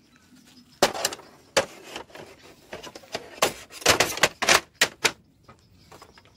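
Irregular sharp knocks and clicks, a dozen or so, densest between about three and five seconds in. They come from the aluminium frame, cross-braces and folding bench legs of an Outsunny folding picnic table being handled.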